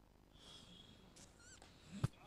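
Near silence, broken by a few faint, short, high-pitched animal calls about halfway through.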